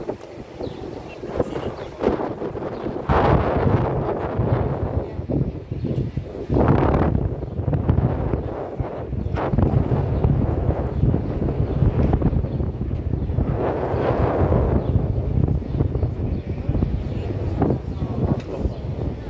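Wind buffeting the microphone on the open top deck of a moving bus, swelling in several gusts, over a low, steady rumble of the bus and street traffic.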